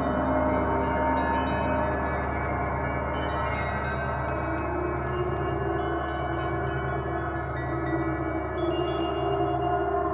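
Large gongs of a three-gong set struck with a mallet in turn, their overlapping tones sustaining as one continuous ringing wash, with bright metallic tinkling high above it.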